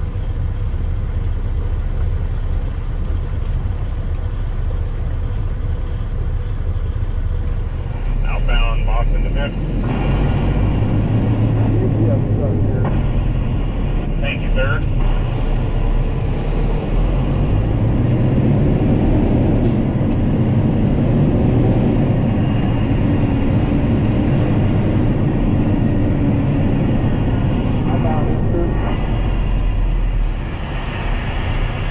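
Kenworth T800 dump truck's diesel engine running, heard from inside the cab, its note rising and falling as the truck moves slowly through city traffic.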